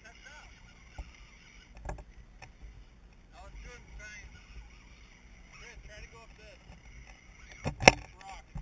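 Electric motors and drivetrains of radio-controlled rock crawlers whining in short rising-and-falling bursts as they are throttled over rocks, with a few clicks and a loud knock near the end.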